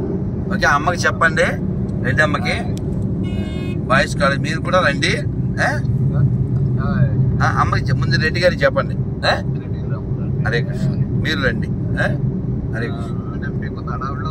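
Speech in short phrases from inside a moving car's cabin, over the car's steady low road and engine rumble.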